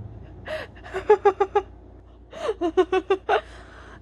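Two short bouts of high-pitched giggling from one voice, each opening with a rising-falling note and running into a quick string of short 'ha' notes, the first about half a second in and the second just past the two-second mark.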